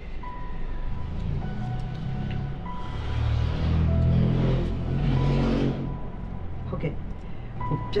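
Film background score: a sustained low synthesizer pad that swells in the middle, under a slow melody of long held high notes.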